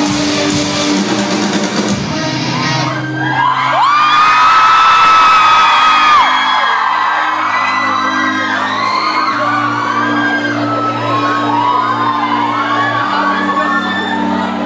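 Live rock band playing with drums and guitar, cutting off about three seconds in and leaving a low held synth chord. Over it the concert crowd screams: one long held high cry, then many short overlapping screams.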